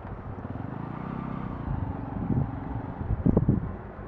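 Outdoor wind buffeting the microphone in low, irregular gusts, the strongest near the end, with a faint motor-vehicle engine hum running underneath about a second in.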